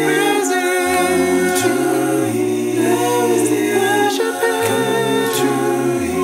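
Male a cappella vocal group singing a Christian song in close harmony, sustained chords over a deep bass line that steps to a new note every second or so.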